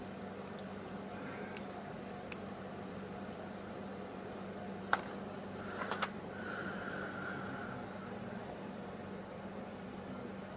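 Steady low room hum with a fan-like hiss, broken by a sharp click about halfway through and a few smaller clicks a second later as a rebuildable dripping atomizer on a metal box mod is handled.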